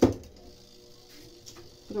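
A single sharp plastic clack from a Suggar spin dryer's timer knob as it is turned and set, ringing out briefly. After it only a faint steady hum remains.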